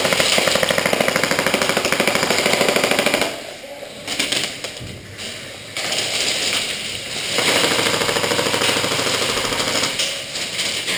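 Airsoft electric rifle firing full-auto, a rapid, even rattle. A long burst stops a little over three seconds in, quieter broken firing follows, and a second long burst begins past the middle and runs almost to the end.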